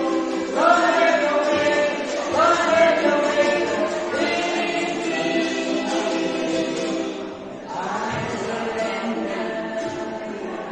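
A small group of men and women singing together with several strummed ukuleles, with a brief break in the singing a little past the middle before the next line starts.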